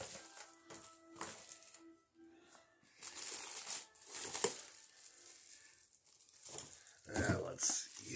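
Plastic packaging crinkling and rustling in short, irregular bursts as items are handled, loudest about four and a half seconds in.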